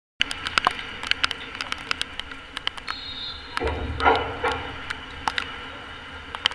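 Outdoor ambience at a football pitch: a steady background hiss broken by many irregular sharp clicks and taps, with a voice calling out briefly about halfway through.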